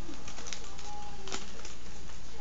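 A soft closed-mouth 'mm' hum with small mouth clicks from someone chewing candy, over a steady low electrical hum. There is a sharp click just past the middle.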